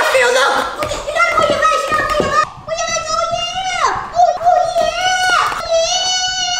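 A high-pitched voice holding long wordless notes, several ending in a falling glide, with a few faint clicks from a hand whisk in a plastic mixing bowl in the first second.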